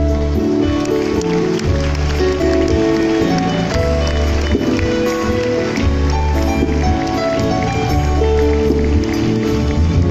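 Live band music through the hall's sound system: held chords over a bass line that moves to a new note every second or so.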